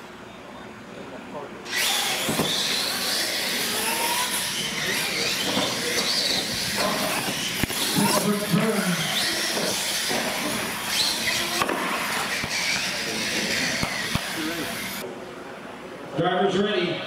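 Radio-controlled monster trucks racing on a concrete floor: a dense whir of electric motors and tyres with a wavering whine, starting suddenly about two seconds in and cutting off near the end. Voices can be heard under it.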